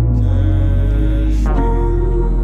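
Slow, droning instrumental music of held, sustained tones over a deep bass, no rapping; the chords shift just after the start and again about a second and a half in, with a short upward sweep.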